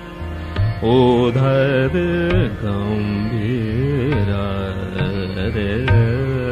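Hindustani classical male vocal in Raag Darbari Kanhra: a slow, wavering, heavily ornamented phrase with gliding pitches, entering about a second in over a steady tanpura drone.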